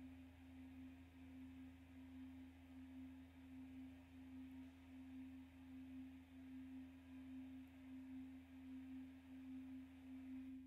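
Faint sustained drone on a single note near middle C, wavering slowly and evenly in loudness, over a low steady hum.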